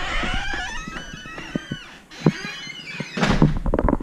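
A house's front door being unlocked and opened: a wavering creak in the first two seconds, then scattered clicks from the latch and handle and a louder knock a little after three seconds in.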